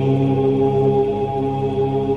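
Many voices chanting Om together, holding one long, steady hum that blends into a continuous drone.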